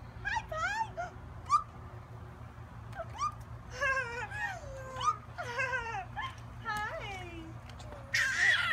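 Toddlers babbling and squealing wordlessly: short, high-pitched calls that rise and fall, a few at first, then a busier run of them in the second half.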